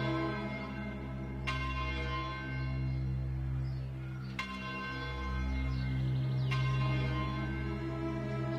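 A church bell tolling slowly, struck three times about two seconds apart, each stroke ringing on, over low sustained background music.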